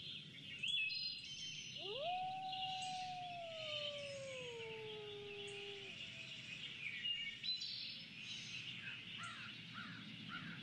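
Woodland ambience of birds chirping and calling over a soft steady hiss. About two seconds in, one long tone rises, holds, and slowly sinks away over about four seconds.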